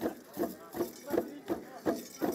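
Traditional dance troupe performing: a steady rhythm of short pulses of sound, close to three a second.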